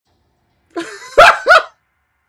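A dog barking twice in quick succession, the two barks about a third of a second apart, just after a brief rough noise.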